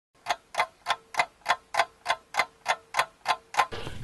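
Clock ticking sound effect: an even, rapid ticking of about three ticks a second, twelve ticks in all, with a faint steady tone underneath through most of it.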